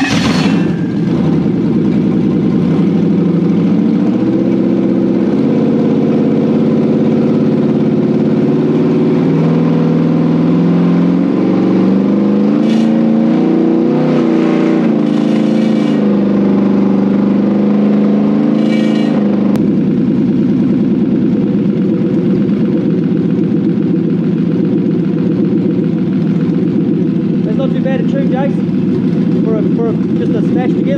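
Toyota 1UZ-FE V8 running on a test stand on a Link Fury ECU with a made-up base map, which the tuner reckons is a little lean. The revs rise and fall as the throttle is worked by hand for the first two-thirds, then settle to a steady idle from about 20 seconds in.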